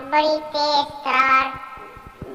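A high, child-like voice singing two long held notes, the second shorter and fading out a little past halfway.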